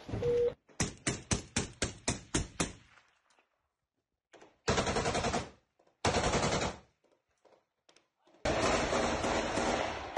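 Automatic weapon fire: a burst of about nine evenly spaced shots over two seconds, about four a second, then three shorter stretches of dense, loud fire or noise later on.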